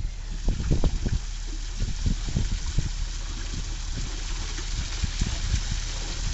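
Water trickling and running through a concrete box culvert, a steady hiss, with low bumps on the microphone in the first half.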